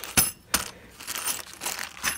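Bag of steel Allen screws handled and set down: the loose screws clink together inside the plastic bag, with two sharp clinks about a quarter and half a second in, then lighter clinking and crinkling.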